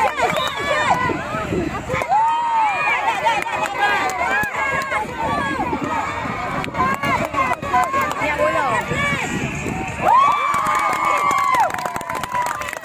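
Crowd of spectators shouting and cheering, many high voices overlapping throughout, swelling into one long loud cheer about ten seconds in as a goal is scored, with hand clapping.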